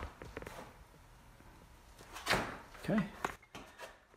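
Light clicks and knocks of a phone camera being handled and moved, in a quiet room, with a short spoken "okay" near the end.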